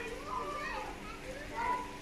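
Children's voices calling and chattering, high-pitched and unclear, with the loudest call near the end, over a steady low hum.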